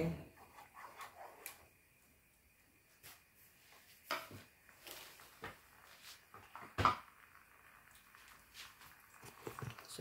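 Wooden spoon stirring in a nonstick pot of sauce, with scraping and a few separate knocks against the pot, the loudest about seven seconds in.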